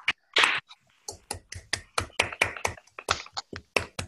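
Hand clapping heard over a video-call connection: a steady run of about five sharp claps a second, each cut off short, with one louder burst near the start.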